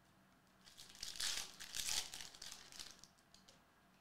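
A trading-card pack's wrapper being torn open and crinkled as the cards are pulled out. It starts about a second in, is loudest over the next second, and dies away before the end.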